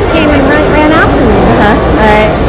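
Indistinct voices and crowd chatter over a steady low rumble.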